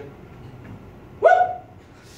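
A man's short, high "woo!" called out as a playful vocal sound effect about a second in, jumping up in pitch and holding briefly before it fades.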